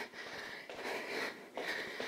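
A woman breathing audibly, about three breaths, winded from marching in place during a cardio workout.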